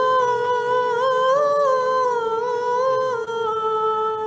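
Unaccompanied liturgical chant during communion: a melody that moves up and down over a steady held drone note, settling onto the drone note about three seconds in.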